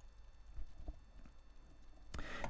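A few faint short clicks, about half a second apart, over a low steady hum in a quiet room.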